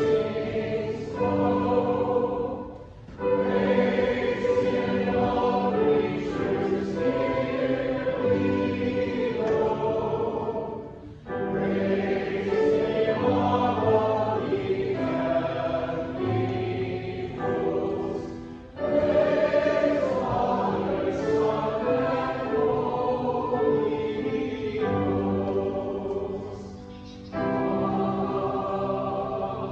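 Church choir singing in long sustained phrases of several seconds, with a short break between lines.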